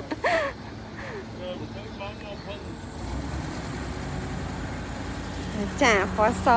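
Low motor-vehicle engine rumble that gets stronger about halfway through, with brief voices at the start and the end.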